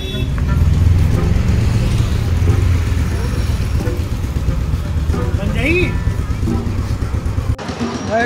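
Low steady rumble of street traffic and motor vehicles, with faint voices in the background; it cuts off abruptly near the end.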